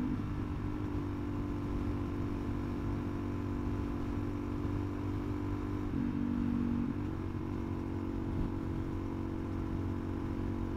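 Suzuki DRZ400SM supermoto's single-cylinder four-stroke engine running steadily at highway speed, with wind noise. The engine note dips briefly about six seconds in, then returns to its steady pitch.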